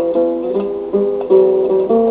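Music: an acoustic guitar picking a melody, one plucked note after another, a few notes a second, each ringing into the next.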